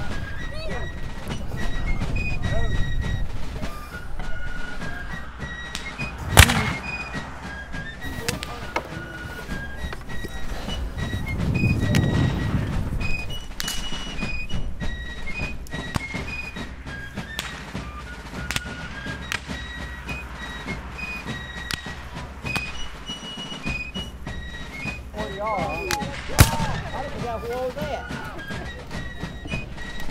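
A high fife tune, with two loud sharp reports of black-powder musket fire, one about six seconds in and one near the end.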